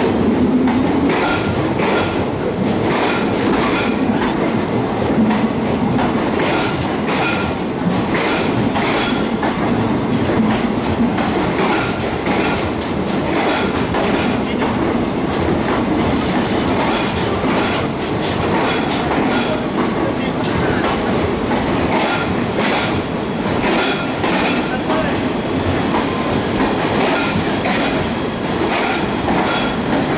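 Passenger coaches of an express train rolling past on the track, the wheels clicking over the rail joints in a steady repeating clickety-clack under a continuous rumble.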